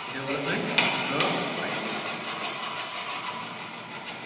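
Hand file being pushed across a metal workpiece clamped in a bench vise, a rough scraping rasp, with two sharp strokes standing out about a second in.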